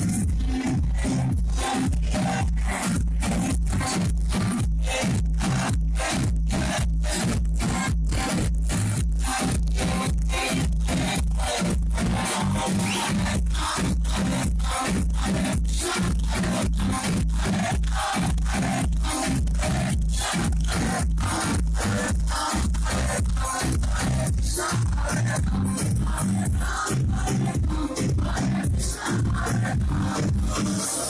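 Loud DJ-mixed dance music played over a club sound system, driven by a steady, heavy bass beat.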